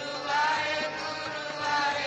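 Naam simran: devotional chanting of 'Waheguru', sung in repeated melodic phrases over a steady drone.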